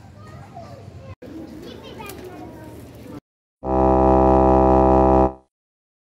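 A loud, steady buzzy tone with many overtones, starting suddenly and held for under two seconds before fading out: an added sound effect between video clips. Before it, faint outdoor background with distant children's voices.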